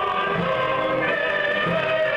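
A choir singing a slow piece, with voices holding long notes over a soft, regular low pulse.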